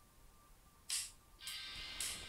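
Music from an MP3 starts playing through the Sony Vaio P11Z's small built-in laptop speakers about a second in, after a near-silent start. It comes through thin, with almost no bass, and sounds terrible.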